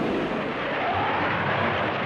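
Sustained rapid cannon fire from fighter aircraft, a dense, steady rattling roar with no single distinct shot.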